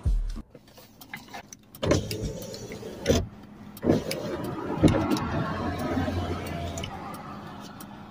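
A car running at a roadside traffic stop: a low steady engine hum with swells of vehicle noise and a few sharp knocks and clicks.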